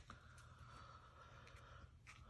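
Near silence: room tone, with a few faint clicks as a glued paper strip is handled and set in place on cardstock.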